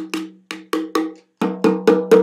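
Handmade three-headed ceramic darbuka (doumbek) with stingray skin heads played with the fingers: a quick run of about ten crisp taps, each with a short pitched ring, getting louder in the last half second.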